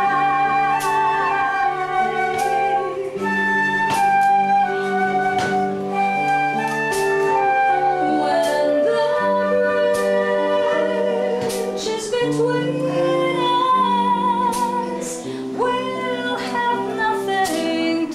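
A song played live at home: electric guitar accompanying a woman singing held, wavering notes.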